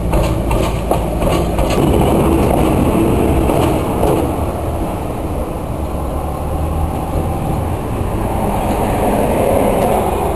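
KiwiRail DSG class diesel shunting locomotive running as it moves along the track, a steady engine rumble with a few sharp clicks in the first couple of seconds.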